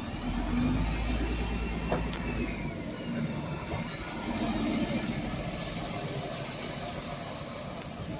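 Double-decker diesel bus pulling away from the stop: a deep engine rumble as it moves off, with a whine that falls in pitch over the first couple of seconds, then a second swell of engine and road noise about four to five seconds in as it drives off.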